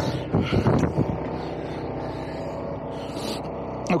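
Narrowboat diesel engine ticking over steadily, with some brief rubbing and knocking in the first second.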